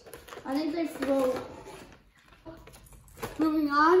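Mostly a boy's voice talking indistinctly in a small room, with a short quiet gap in the middle before he starts speaking again near the end.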